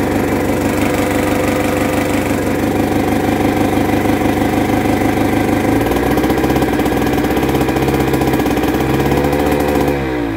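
PD-10 single-cylinder two-stroke starting engine running steadily. About six seconds in, a deeper pulsing joins as it turns over the D-50 diesel, which is cranking without diesel fuel to build heat. Near the end the pitch rises slightly, then begins to fall as it winds down.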